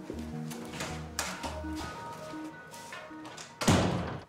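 Soft background score of short, plucked-sounding notes. Near the end a single loud thud, a wooden door shutting.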